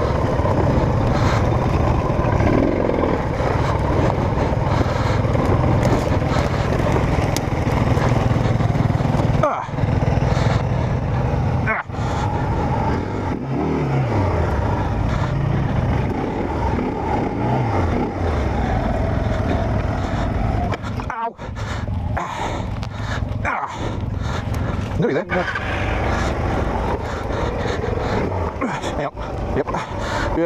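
Single-cylinder dual-sport motorcycle engine running at low revs through a slow descent over logs and the bike's drop. The pitch dips a few times in the middle.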